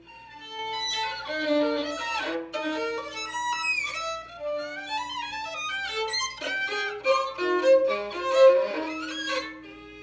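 Solo violin playing a contemporary piece: a fast, broken-up run of bowed notes, at times two at once, with sliding pitch glides. It starts from silence, grows loudest near the end, then falls back to a quiet held note.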